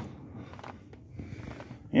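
Quiet shop background with a few faint, soft taps from a hand touching a cardboard toy box.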